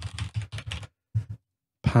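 Computer keyboard being typed on: a quick run of keystrokes entering an email address, then a short pause and two more keystrokes a little after a second in.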